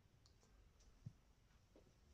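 Near silence: room tone with a few faint clicks and one soft low thump about a second in.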